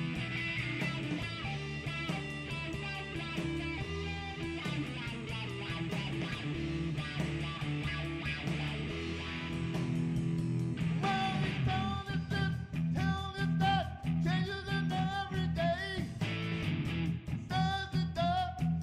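Southern rock band playing electric guitars, bass and drums at a steady beat. About two-thirds of the way through, a lead guitar line with bending, gliding notes comes in over the band.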